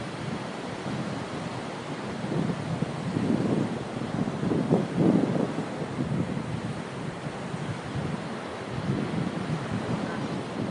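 Wind gusting across the microphone over the wash of breaking ocean surf, with the strongest gusts about three and a half and five seconds in.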